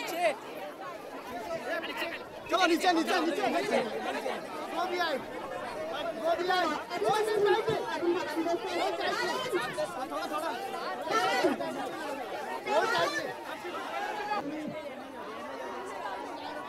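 Crowd chatter: many people talking over one another at once, no one voice clear.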